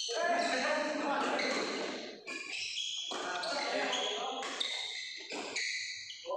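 Indoor badminton doubles play: players' voices echo in a large hall, with racket strikes on the shuttlecock.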